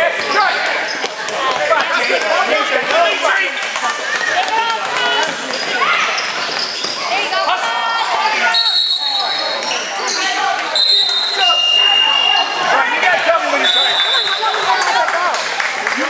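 Basketball game in a gym: spectators and players talking and calling out over one another, with a basketball bouncing on the court. Several short high squeaks come in the second half.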